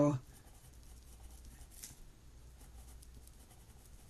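Faint scratching of a pen writing on paper, in a run of small irregular strokes.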